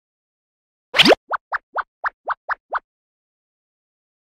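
Cartoon sound effect: a loud pop with a rising sweep about a second in, then seven quick rising bloops in a row.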